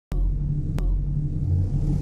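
Intro sound effects: a deep steady rumble that starts with a sharp click, with a second sharp click under a second in.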